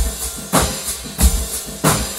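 Multitrack drum recording played back: two layered live drum-kit parts with added percussion, a steady beat of kick and snare alternating about every 0.6 seconds.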